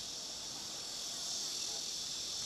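A steady, high-pitched insect chorus buzzing without a break.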